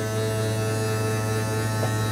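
Electric bedroom slide-out motor of a fifth-wheel RV running as the slide extends: a steady low hum.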